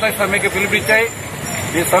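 A man speaking, with a pause about a second in, over a steady hum of street traffic.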